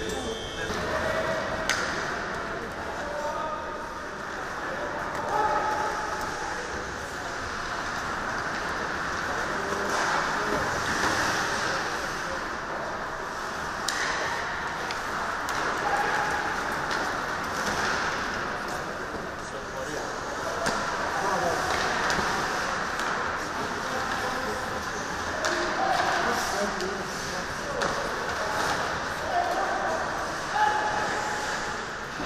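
Live ice hockey play in an echoing arena: a steady wash of on-ice noise, with indistinct shouts and voices of players and onlookers and an occasional sharp clack of stick or puck.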